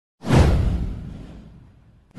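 Intro sound effect: a whoosh with a deep low boom underneath. It starts suddenly a fraction of a second in, sweeps down in pitch and fades out over about a second and a half.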